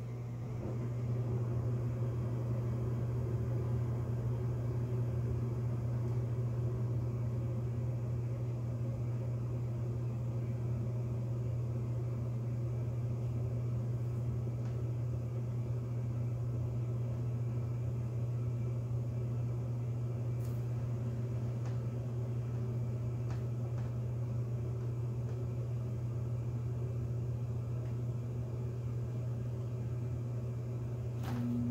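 A steady low hum, like a motor or appliance running, that gets louder about a second in and holds level, with a few faint clicks in the second half.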